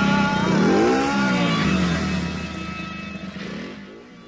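Chopper motorcycle engine revving, its pitch rising and falling, mixed with background music. Both fade out through the second half.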